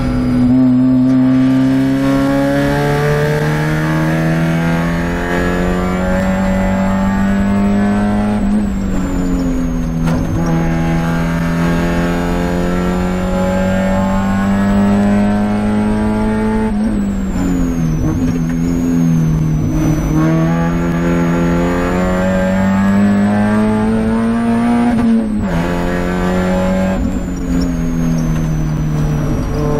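Spec Miata's four-cylinder engine heard from inside the stripped race-car cabin, pulling hard at racing speed. Its pitch climbs steadily and drops back sharply about 8 seconds in, again about 17 seconds in, and near the end, as the car shifts or lifts for corners.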